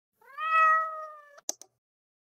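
A cat's single meow, rising at the start and then held for about a second, followed by two short clicks.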